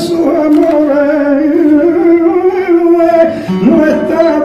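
Male flamenco singer holding a long, wordless melismatic line, the pitch wavering and sliding between notes, with a short break and an upward slide about three and a half seconds in.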